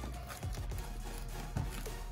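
Crunchy floam, glue slime packed with foam beads, squished and kneaded by hand, giving a few sticky clicks and pops, with quiet background music underneath.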